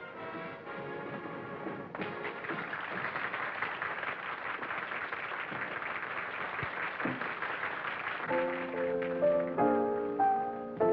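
Music: a dense, busy passage, then clear piano chords played in steps from about eight seconds in.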